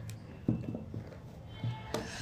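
A few light clicks and taps of plastic connector pens being handled, with small knocks about half a second in, around one second and near the end.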